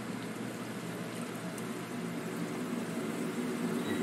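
Maple syrup running out of a stainless steel plate filter press into its steel tray as the plates are opened: a steady liquid hiss with a faint low hum underneath.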